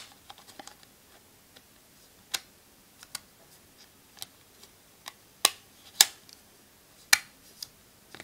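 Battery cover of a Kyocera Echo phone being pressed and snapped back onto the back of the handset: a scattered series of short, sharp clicks as its latches catch, the loudest in the second half.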